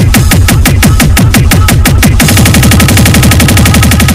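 Loud Bhojpuri Holi DJ competition mix in the 'hard bass toing' style: a fast electronic drum roll build-up, each hit carrying a bass note that drops in pitch. The roll doubles in speed about two seconds in.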